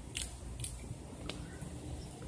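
Squirrels gnawing acorns: three short, crisp cracks at uneven spacing within about a second and a half, over a low rumble.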